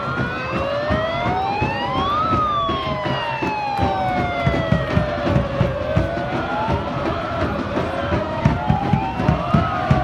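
A siren in the stands winds up to a high wail over about two seconds and then slowly coasts back down, twice, over crowd noise. A regular thumping beat runs under it.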